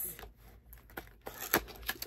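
Small cardboard box of bandages being opened and handled: quiet rustling, then a few sharp clicks and taps near the end.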